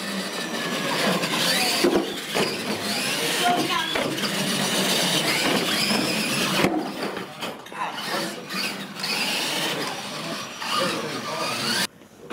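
Electric RC monster trucks racing, their motors whining and rising and falling in pitch as they speed up and slow down. The sound cuts off suddenly near the end.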